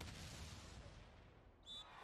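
Near silence: faint background hiss, with one brief faint high squeak near the end.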